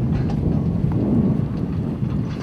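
Wind buffeting the microphone of a handheld camera: a steady low rumble.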